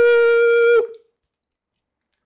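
A loud, steady buzzing tone at one unchanging pitch, lasting just under a second, made to set off a sound-activated camera trigger.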